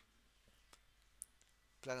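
A single computer mouse click about a third of the way in, over faint room tone, with a brief faint high blip shortly after; a man starts speaking near the end.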